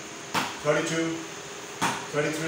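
Cricket bat knocking a ball hung on a cord, twice, about a second and a half apart, each knock followed by a voice counting the hit.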